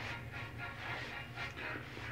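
Soft, quiet rubbing and patting of a cotton towel against a freshly shaved face, a few light strokes, over faint background music.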